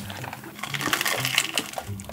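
Rustling and crackling of the plastic liner inside a fried-chicken takeout box as the box is lifted and a piece of chicken is picked out, loudest in the middle, with a few light handling clicks.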